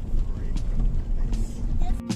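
Car cabin noise from a car rolling slowly along a gravel driveway: a steady low rumble of engine and tyres.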